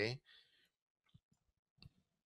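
A pause in a man's speech, close to silent, with two faint short clicks, one about a second in and one near the end.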